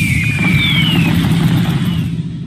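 A slot game's fire sound effect for a burning Wild symbol on a win: a loud, steady rumbling whoosh with hiss, and a couple of falling whistles through it.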